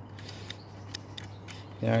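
A damp cloth rubbing over the plastic parts around a CRT monitor's tube neck and deflection yoke, giving faint scattered creaks and clicks.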